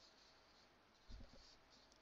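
Near silence, with faint scratching of a marker drawing on a whiteboard and a soft knock about a second in.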